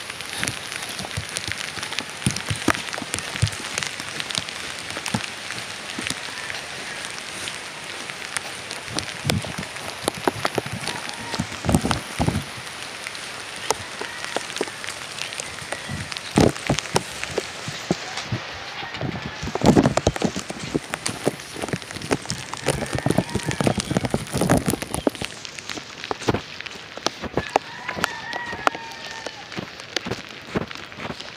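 Steady heavy rain, with many sharp drops striking surfaces close by and a few louder clusters of hits.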